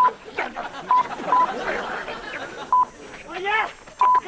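Short censor bleeps, single steady beeps near 1 kHz, sounding four times at uneven intervals over shouted, angry speech.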